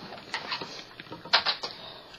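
Handling noise: a few short knocks and rustles, one about a third of a second in and three close together about a second and a half in.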